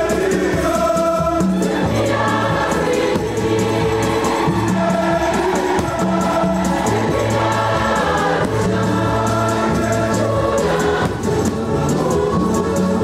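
A church choir singing a hymn with instrumental accompaniment, over a bass line of held low notes that change every second or so.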